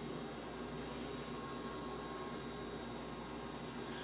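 Steady background hiss with a faint hum, room tone with no distinct event.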